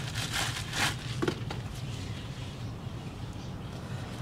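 Bubble wrap crinkling in a few quick rustles during the first second or so as gloved hands pull it off a part, then only a steady low hum.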